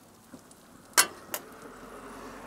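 Two sharp clicks about a third of a second apart near the middle, then a faint, steady sizzle of meat, vegetables and cheese frying on the hot grill plate.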